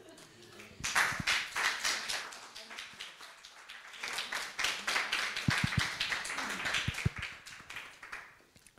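Audience clapping in applause: it starts about a second in and thins out and dies away near the end.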